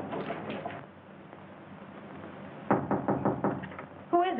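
Knocking on a door: a quick run of about half a dozen raps, starting about two-thirds of the way in.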